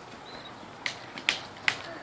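Quiet outdoor background broken by three or four short, soft clicks, about half a second apart, starting about a second in.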